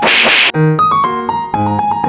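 A short slapping 'pat' sound effect in the first half second, over light background piano music that runs on.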